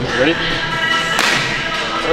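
A hard open-hand slap on a lifter's back: one sharp crack about a second in, over background music.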